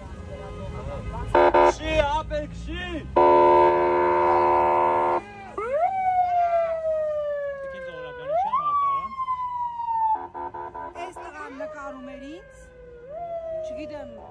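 Police car siren cycling through its tones: a fast warble, then a loud steady horn-like blast about three seconds in, then repeated sweeps that jump up sharply and slide slowly down, every two to three seconds.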